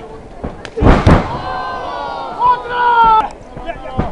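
A heavy double thud on a wrestling ring about a second in: a wrestler's body or feet slamming onto the mat. Shouting voices follow near the end.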